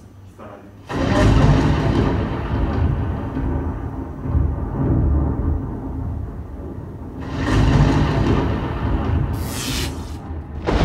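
A deep, ominous rumbling sound effect starts suddenly about a second in and swells again near the end, where a rising hiss joins it.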